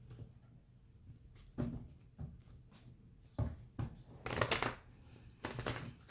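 A deck of oracle cards being shuffled and handled by hand: a string of brief papery rustles and flicks with short pauses between them, the loudest about two-thirds of the way through.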